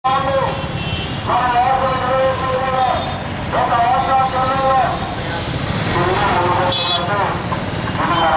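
A voice singing long held notes, each lasting a second or more, over a steady low rumble of traffic.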